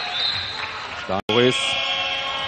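Arena crowd noise from an old basketball TV broadcast, with a thin steady high tone over it and a brief bit of the commentator's voice just after a second in. Around then the sound cuts out completely for a split second before the crowd noise comes back.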